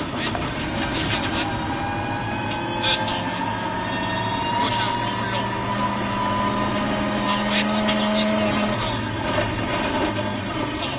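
Onboard sound inside a 2001 Ford Focus WRC rally car at speed on a wet gravel stage: its turbocharged four-cylinder engine pulls hard under a dense wash of tyre and gravel noise. The engine note climbs slowly for several seconds, then drops near the end.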